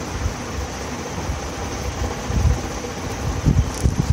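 Steady background noise with irregular low rumbles, like wind or traffic heard on an open microphone.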